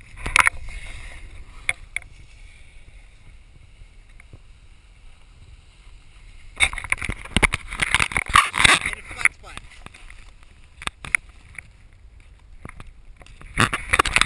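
A snowboard sliding and scraping over packed snow, with wind rushing on an action camera's microphone. The scraping comes in louder, rough spells: briefly at the start, for about three seconds a little past the middle, and again near the end, when the camera is jostled low against the snow.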